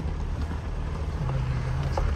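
Jeep driving slowly up a rough dirt road, heard from inside the cabin: a steady low rumble of engine and tyres, with a low engine hum held for a moment in the second half.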